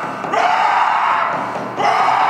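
A person's voice crying out in long, repeated wails, each lasting about a second and a half, with a new cry starting about a third of a second in and another near the end.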